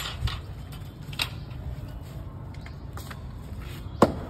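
Stacked cooked rotis being lifted and shuffled by hand: a few light, crisp taps and rustles, three of them sharper, over a steady low background rumble.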